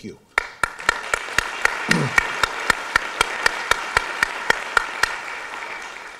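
Audience applauding, with one person's loud, sharp claps near the microphone at about four a second standing out over the crowd's clapping; it tails off near the end.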